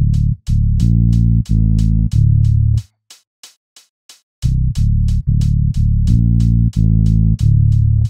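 A basic bass line played on its own in FL Studio: a few long, low held notes, a pause of about a second and a half, then the same pattern again as it loops. Faint quick ticks sound steadily over it.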